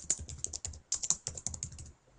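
Typing on a computer keyboard: a quick run of keystrokes that stops just before the end.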